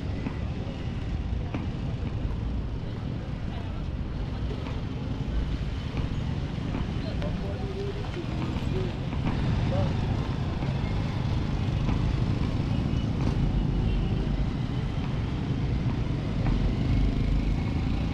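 Busy city street ambience: steady traffic noise with voices of passers-by talking.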